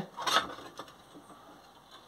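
Faint handling noises: a short scrape about a third of a second in, then a few light clicks as a small metal workpiece is set into a bench vise.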